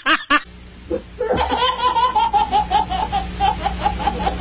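A brief bit of laughter at the very start, then after a short lull a baby belly-laughing in a quick, even run of breathy bursts, about four or five a second, from a little over a second in.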